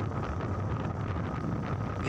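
Wind buffeting the microphone of a phone camera carried on a moving vehicle, over a steady low rumble of engine and road noise.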